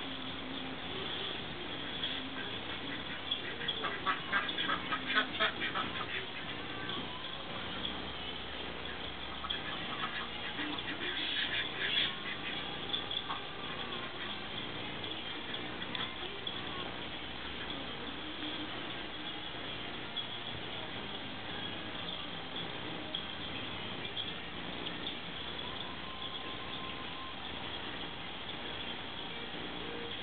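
Domestic ducks (Indian Runners and Khaki Campbells) quacking in bursts of quick, repeated calls, the busiest spells a few seconds in and again around the middle, over a steady background hiss.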